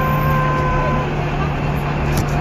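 City bus engine running close by, a steady low drone, with a steady high tone over it that stops about halfway through.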